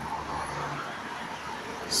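Steady road traffic noise from cars running along a city street.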